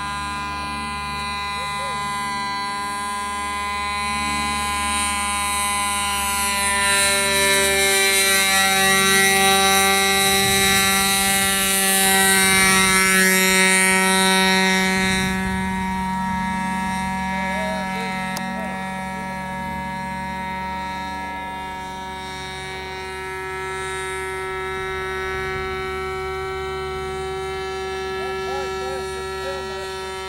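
Motor of a 12-foot radio-controlled ultralight model airplane droning steadily in flight. It grows louder as the plane comes close overhead about halfway through, and its pitch drops as it passes, then it steadies again.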